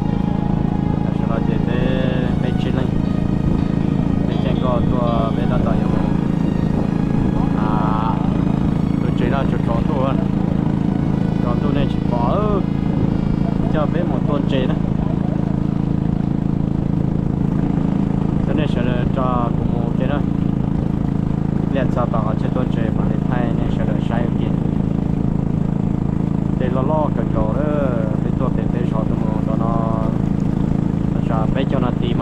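Motor of a narrow wooden boat running steadily under way, a constant low drone. People's voices talk over it now and then.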